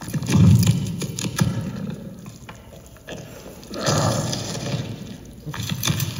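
Audience laughing, in two swells: one right at the start and another about four seconds in.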